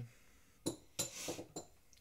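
Two sharp metal clinks, about two-thirds of a second and one second in, followed by a short metallic rattle: a steel ratchet and socket being handled on the workbench.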